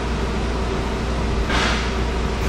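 Trailer-mounted hot water pressure washing system running steadily: a low engine or pump hum under an even hiss, with a brief louder hiss near the end.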